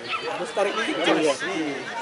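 Several spectators' voices chattering and calling over one another, close to the microphone, with no single clear speaker.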